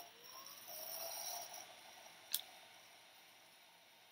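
ACE handheld heat gun running faintly as it blows hot air over paper to dry it, with a whine that rises in pitch during the first second, then settles and fades. A single sharp click comes a little over two seconds in.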